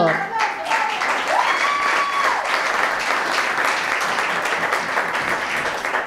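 Live comedy-club audience applauding steadily. A single cheer rises over the clapping about a second and a half in.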